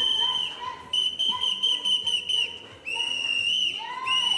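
A whistle blown in three long, steady blasts of about a second each, with short breaks between them.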